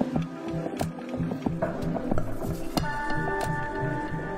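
Neo soul song's instrumental intro: held chords over an evenly pulsing bass line, with light clicking percussion. The chord changes about three seconds in.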